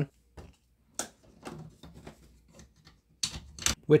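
Handling noise from small parts and tools: a single sharp click about a second in, faint rustling, then a quick run of clicks and taps near the end.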